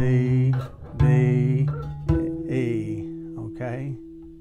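Acoustic guitar's low E string plucked one note at a time, climbing the neck about a note a second, the last note ringing on: the octave E at the twelfth fret.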